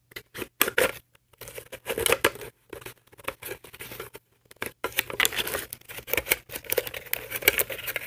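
Toy packaging being unwrapped and handled: rapid, irregular crackles and rustles of plastic and paper, busiest in the second half.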